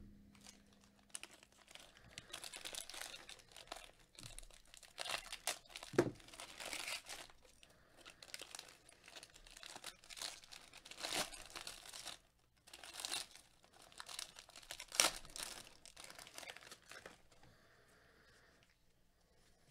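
Foil wrapper of a baseball card pack being torn open and crumpled by gloved hands, in repeated bursts of crinkling, with a soft thump about six seconds in.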